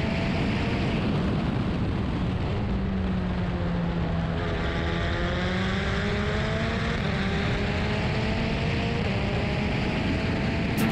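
Race car engine running at speed on track, heard from outside the car with a heavy rush of wind and road noise; the engine note climbs slowly through the second half as the revs build.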